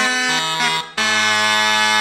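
Renaissance cornamuses playing together in harmony: a few short moving notes, a brief break just before a second in, then a long held final chord.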